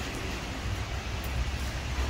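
Heavy rain pouring onto a wet parking lot, a steady hiss with a low rumble underneath.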